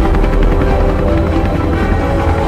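Helicopter rotor beating rapidly over dark background music with long held notes.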